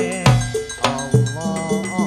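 Hadrah music. Frame drums and a bass drum beat a quick syncopated rhythm with sharp strikes and deep thumps, under a man's wavering, melismatic singing through a microphone.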